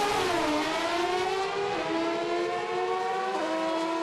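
Pro Stock drag motorcycle's naturally aspirated engine at full throttle, accelerating down the strip: the engine note climbs steadily and drops sharply at each upshift, about half a second, two seconds and three and a half seconds in.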